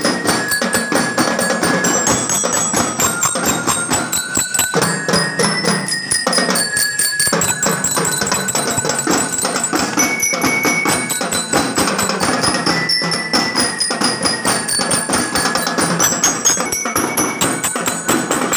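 A marching drum-and-lyre band playing: metal bell lyres ring out a melody of clear, high notes over a steady beat of drums.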